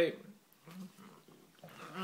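A few faint, short low sounds from a Bengal cat as it noses for food on the floor, between a man's spoken words at either end.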